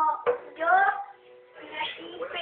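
A child singing a short phrase to an acoustic guitar, with a sharp strum about a quarter second in; the voice breaks off around the middle and starts again near the end.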